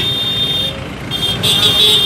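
Road traffic: motorcycles and cars driving past with a steady engine rumble, under a steady high-pitched whine that breaks off for about half a second near the middle.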